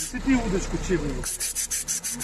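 A man says a couple of words in Russian over a rapid, high-pitched rasping of about nine even pulses a second. The rasping drops away while he speaks and comes back about a second and a half in.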